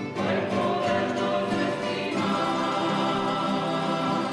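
A plucked-string ensemble of guitars and mandolins playing, with voices singing along.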